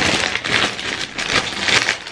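Clear plastic cellophane packaging crinkling and crackling as it is handled and unwrapped by hand.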